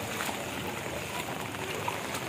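Floodwater sloshing and splashing around legs as people wade through a flooded street, heard as a steady watery noise.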